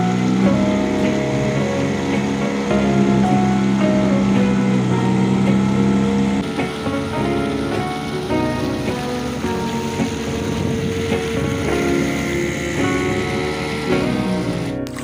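Background music with held notes and a slowly changing melody.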